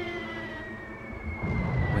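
The long, slowly falling whistle of an incoming artillery shell, as a battle sound effect, over a low rumble that swells about one and a half seconds in.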